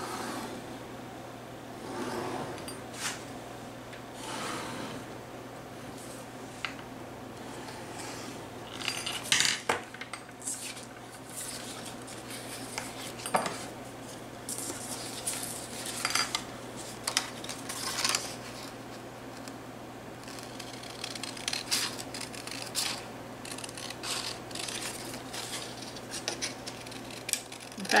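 Craft handling at a counter: a pen tracing on cardstock, then sheets of cardstock and a stiff frame backing board sliding, rustling and being set down. These come as scattered short scrapes and rustles over a steady low hum.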